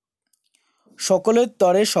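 Near silence for about a second, then a person's voice speaking Bengali.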